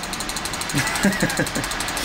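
A motor running steadily with a fast, even pulse. Low talk and laughter come in over it after the first half-second.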